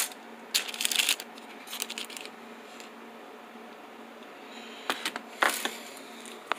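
Plastic packaging bags crinkling in short bursts as they are handled, about a second in, again about two seconds in, and near the end, with a few light clicks.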